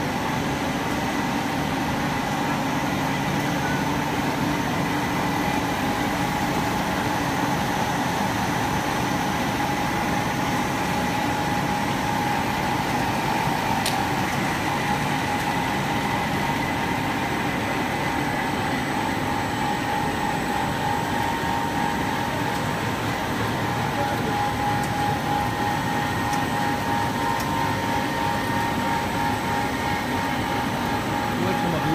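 Rubber hose production line running: extruders and a spiral yarn-reinforcement machine giving a constant mechanical hum with a few steady tones, and a single brief click about halfway through.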